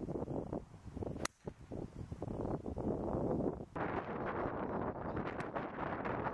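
Wind buffeting the microphone on a golf course, with the sharp click of a golf club striking the ball about a second in and a fainter strike near the end.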